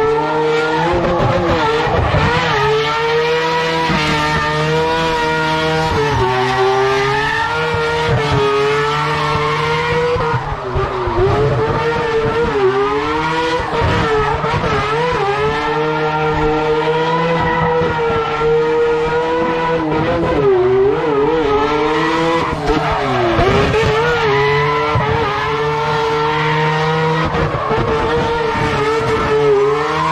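Rotary-engined drift car doing a burnout, its engine held at high revs on the limiter with repeated brief dips and climbs in pitch as the throttle is worked. The spinning rear tyres screech underneath.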